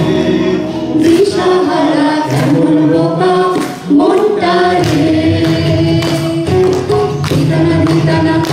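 A mixed group of men and women singing a Bengali song together in unison, with guitar accompaniment, holding long notes that slide between pitches.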